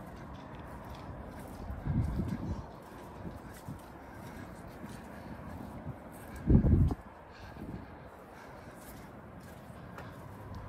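Wind buffeting the microphone outdoors, with two short low gusts, about two seconds in and louder near seven seconds, over a steady hiss of open-air ambience.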